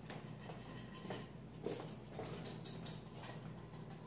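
Light, scattered clicks and knocks of utensils and cookware handled at a stove, over a steady low hum.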